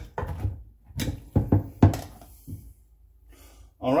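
A measuring cup knocking and scraping against a stainless steel saucepan while scooping and packing cold cooked rice. There are about half a dozen sharp knocks in the first two seconds, then it goes quiet.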